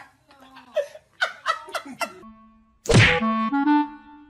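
People laughing in short bursts, then a single loud whack about three seconds in, after which a light, playful music track starts.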